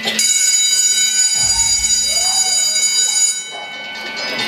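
A loud, steady electric alarm tone, high and buzzing like a bell or school buzzer, cutting off sharply about three and a half seconds in. A low rumble sounds underneath from about a second and a half in.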